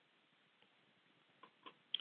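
Near silence: a faint steady hiss with three faint short clicks in the last half-second.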